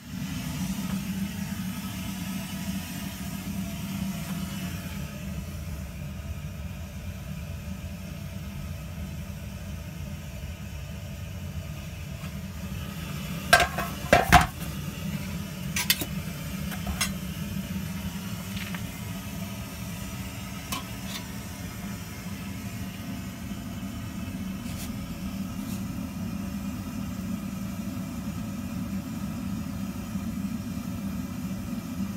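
Small brewing pump running with a steady low hum. A few sharp metallic clanks about halfway through, with fainter knocks after them.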